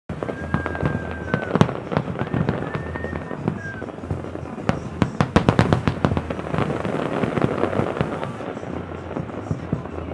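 Aerial fireworks bursting at a distance: a steady run of sharp bangs, packing into a dense volley of reports around the middle. Twice in the first four seconds a long, steady high tone sounds over the bangs.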